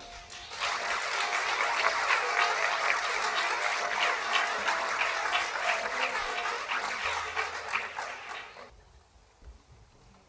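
Audience applauding after a folk-music piece ends, the clapping starting about half a second in and dying away near the end.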